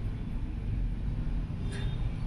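Steady low rumbling background noise, with no clear events.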